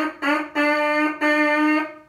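A brass mouthpiece buzzed on its own, playing a rhythm on one steady pitch: two short notes, then two longer held ones.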